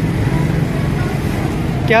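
Steady low engine rumble of road traffic, with a voice starting right at the end.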